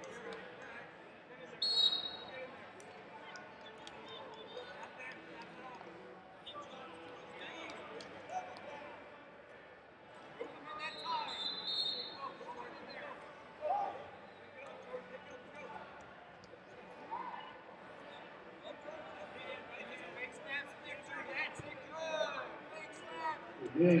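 Ambience of a large wrestling arena: a steady haze of distant, echoing voices from the hall, broken by a few sharp slaps or thuds, the loudest about two seconds in and another near the middle.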